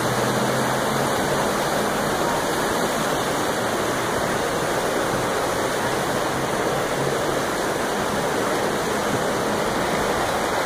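Fast river rapids: a steady, unbroken rush of whitewater over rocks and a low weir.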